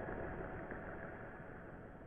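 The closing fade-out of an electronic track: a low, noisy synth drone with a few held tones, dying away steadily.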